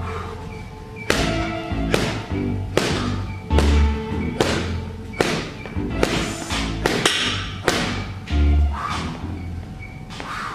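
Gloved punches landing on a heavy punching bag: a run of about a dozen sharp thuds, each well under a second apart. Rap music with heavy bass plays behind them.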